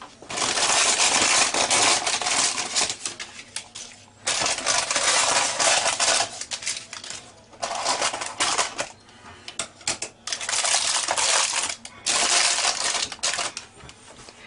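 Scissors cutting stiff parchment baking paper around the rim of a cake tin, the paper crackling and rustling in about five bursts of one to two seconds each.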